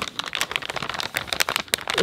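Metallized anti-static bag crinkling as a circuit card is slid out of it: a dense run of irregular crackles.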